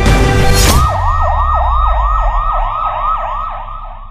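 Theme music stops within the first second. A siren then sounds in rapid rising-and-falling sweeps, about three a second, over a low rumble, and fades toward the end.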